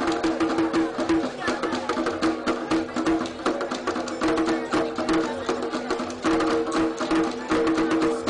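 Traditional percussion music: rapid, sharp drum and wood-block-like strikes over a steady held tone, played throughout.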